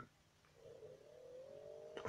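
Near silence, with a faint tone that begins about half a second in, rises slowly in pitch and then holds steady.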